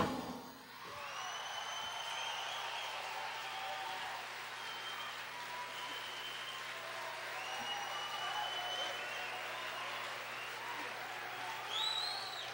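Concert audience applauding and cheering, with several long whistled notes held over the clapping.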